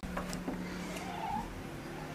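Patio door being unlatched and opened, with a couple of faint clicks near the start. A short faint rising-and-falling tone about a second in.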